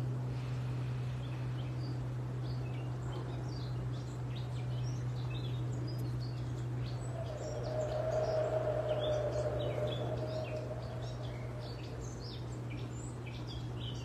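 Wild birds chirping and calling in short scattered notes over a steady low hum. A soft, drawn-out sound swells and fades in the middle.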